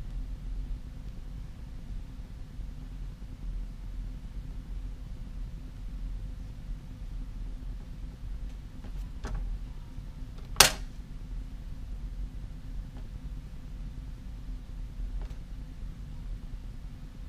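Quiet handwork with a marker on a paper card over a cutting mat: a steady low background hum, a few faint ticks around nine seconds in, and one sharp click a little after ten seconds.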